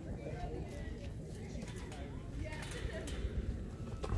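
Outdoor ballfield ambience: a steady low rumble with faint, distant voices of players and spectators, loudest about two and a half seconds in.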